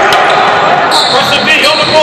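A basketball bouncing on a hardwood gym floor during a game, over the echoing chatter of voices in the hall, with a high squeak about a second in.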